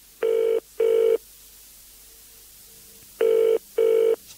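Telephone ringing in the British and Irish double-ring pattern: two short rings, a pause of about two seconds, then two more.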